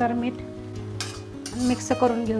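Flat steel spatula stirring and scraping spinach against the side of an iron kadhai, with a light frying sizzle and a couple of scraping strokes, one about a second in and one near the end.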